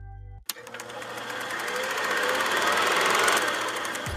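A fast, evenly repeating mechanical clatter that starts suddenly about half a second in, grows louder, then eases off near the end.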